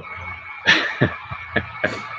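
A man laughing in a few short breathy bursts.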